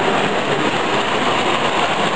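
Hornby O gauge tinplate coaches running on tinplate track, a steady, unbroken running noise.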